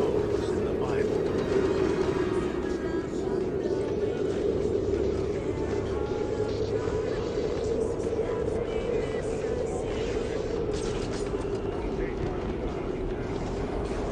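Steady low droning ambience with a rumble underneath and faint, indistinct voices over it.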